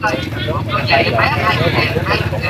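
People talking throughout, over a steady low hum.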